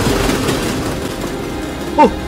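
A train passing close by on the tracks: a steady rushing noise that eases off slightly near the end.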